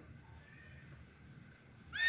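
Near silence, then a horse's whinny starts with a rising cry just at the end.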